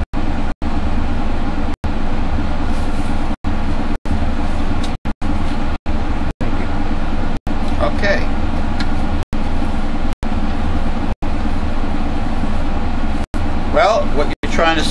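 Loud steady background rumble and hiss, broken by brief dropouts to silence about once a second, with a faint voice murmuring briefly about eight seconds in.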